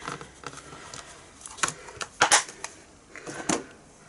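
Clear plastic plates of a Stamparatus stamp-positioning tool being handled and lifted off its base: a scattering of sharp plastic clicks and clacks, the loudest a little after two seconds in.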